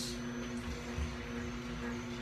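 Green Star Elite twin-gear slow juicer running with a steady low hum, its gears crushing produce fed down the chute.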